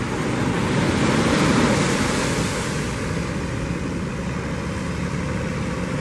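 Surf washing onto the beach, swelling about a second or two in and then easing, with a steady low engine hum underneath.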